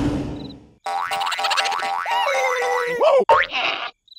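Cartoon sound effects: the tail of a roar fades out, then a springy boing effect repeats rapidly for about two seconds with a sliding tone over it, ending in quick rising and falling glides.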